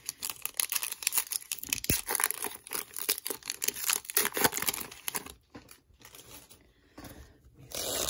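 Foil wrapper of a trading-card pack being torn open and crinkled by hand: a dense run of crackling and tearing that dies away about five seconds in.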